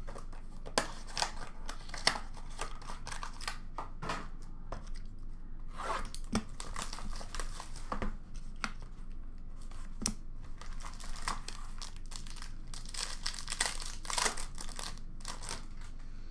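The plastic wrap and cardboard of an Upper Deck Black Diamond hockey card box being torn open by hand: repeated tearing and crinkling in several bouts.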